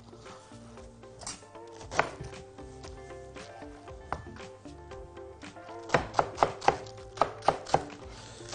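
Chef's knife chopping a head of lettuce on a cutting board over quiet background music: a few light taps at first, then from about six seconds in a quick run of sharp chops, about four a second.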